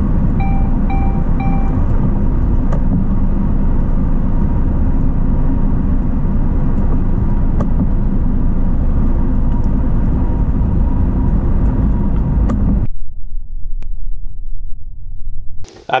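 TomTom GO Professional 6250 sat nav sounding its speed camera alert: three short electronic beeps about half a second apart near the start. They sit over loud, steady driving rumble inside a lorry's cab, which cuts off about 13 seconds in and leaves a much quieter background.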